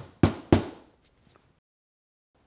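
Claw hammer driving a nail into a wooden loft table: three quick blows about a quarter second apart, each ringing briefly.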